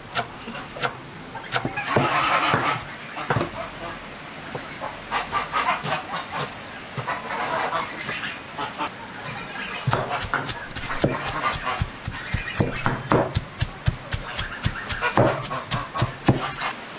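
Kitchen knife chopping on a wooden cutting board, in quick irregular strokes, first through fresh herbs and then through onion and minced chicken. Domestic fowl call in the background, loudest about two seconds in.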